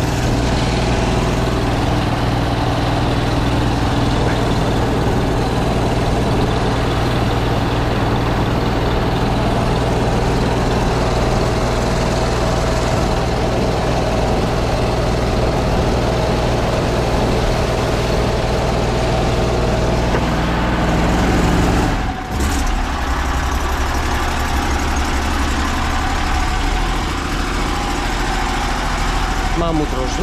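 Van-mounted high-pressure sewer jetter running steadily, its engine-driven pump feeding the jetting hose that is stirring up and carrying away sand in the drain line. About two-thirds of the way through the sound dips briefly and settles into a lower note.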